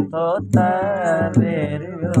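A man singing a Sindhi Sufi kalam over instrumental accompaniment. About half a second in he holds one long wavering note.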